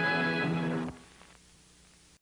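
Closing film music on a held final chord, cutting off abruptly about a second in and leaving only a faint hiss.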